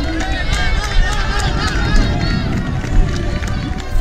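Running footfalls and wind rumble on a runner-carried camera's microphone, over many spectators' voices shouting and cheering.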